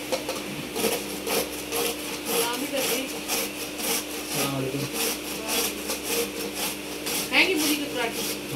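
White radish (mooli) being grated by hand on a metal grater over a steel bowl: a regular run of rasping strokes, about two or three a second.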